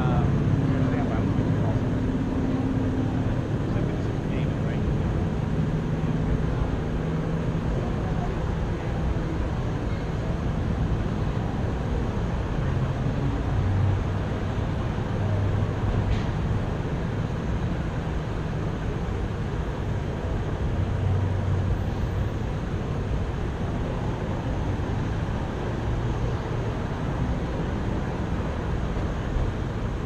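Steady low rumble of background noise with indistinct voices mixed in.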